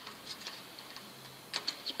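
Hose clamp being tightened with a flat screwdriver around a stainless steel chimney pipe: faint, irregular clicks of the clamp screw turning in the band, with a small cluster of sharper ticks near the end.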